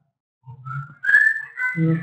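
A short, high whistle-like tone, starting with a click about a second in and rising slightly in pitch for under a second, preceded by a faint low hum.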